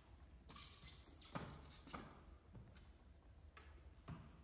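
Very quiet passage of contemporary chamber music: near silence broken by a soft breathy swish, a sharp tap about a second and a half in, and a few faint ticks.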